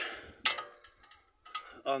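Sharp metallic clicks of a ratchet with a 7 mm hex bit being fitted onto a rear brake caliper bolt. One loud click comes about half a second in, followed by a few lighter ticks.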